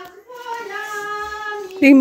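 A high voice holds one long, steady sung note for over a second, then loud speech starts near the end.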